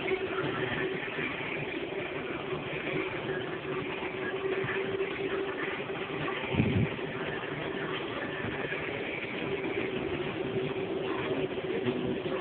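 Supermarket ambience: a steady mechanical hum over a general background hiss, with one brief low thump a little past halfway.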